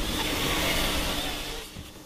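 Forestry harvester running, heard inside its cab: a steady rushing noise of the engine and hydraulics that starts abruptly and fades out near the end.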